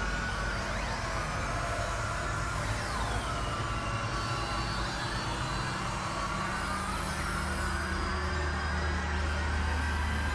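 Experimental electronic drone music from synthesizers: a steady low hum with noise over it, and thin whistling tones that glide slowly up and down in pitch.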